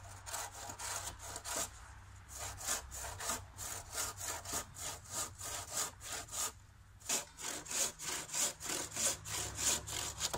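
Handsaw cutting through a pressure-treated wooden post in steady back-and-forth strokes, about two or three a second, with short pauses a couple of seconds in and again about two-thirds of the way through.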